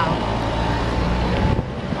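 Steady low traffic rumble of a city street, with faint voices in the background.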